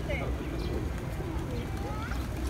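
Feral pigeons in a large flock cooing, over a steady low rumble and voices in the background.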